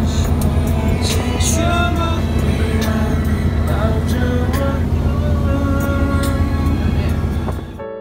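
Boat engine droning loudly and steadily under voices on board, cutting off suddenly near the end.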